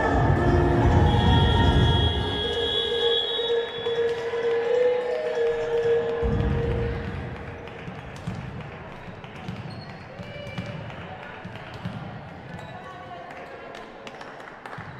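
Music over the hall's sound system for the first few seconds, fading out about halfway through; after it, a volleyball bounced a few times on the wooden court floor, short sharp knocks echoing in a large hall, with voices in the background.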